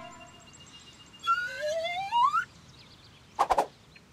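Cartoon sound effects. About a second in, a rising whistle-like glide lasts just over a second. Near the end come a quick couple of knocks.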